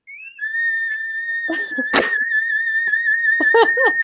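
A single very high held note, close to a pure tone, glides up into place and then holds with a slight waver, as a closing flourish to the sung theme. There is a sharp click about halfway, and laughter near the end.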